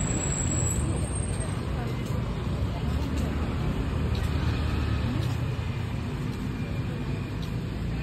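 Street ambience: a steady rumble of road traffic with people's voices in the background.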